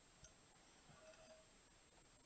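Near silence: room tone, with a faint light tick about a quarter of a second in from the stainless steel exhaust header pipe being handled.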